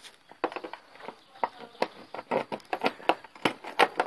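A run of irregular clicks and knocks from handling the scooter's seat as it is lifted to open the under-seat storage compartment.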